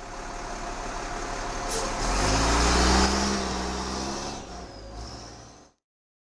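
Sound-effect logo sting of a motor vehicle engine: it swells up, revs with rising pitch about two to three seconds in, then fades and cuts off just before the end.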